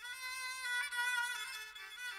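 Instrumental passage of Moroccan Andalusian music, led by bowed violin, entering right after a brief break with long held notes that step up and down in pitch.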